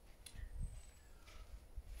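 Quiet outdoor pause: a faint low rumble with one soft click about a quarter of a second in.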